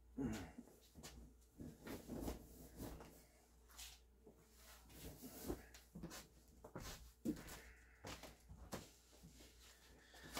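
Faint, intermittent rustling of a hooded sweatshirt being pulled on over the head, with a few soft knocks.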